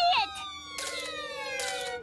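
A cartoon sound effect: a siren-like tone with several pitches gliding slowly downward together for over a second, over a low held note.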